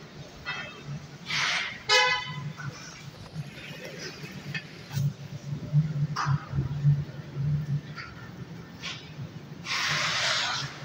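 Busy city street traffic: a vehicle horn gives one short toot about two seconds in, over the low running of engines. A few brief hissing bursts come and go, the longest near the end.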